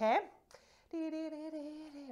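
A woman's voice says "okay?", then after a short pause holds one long steady vowel at an even pitch, a hesitant hum-like "umm".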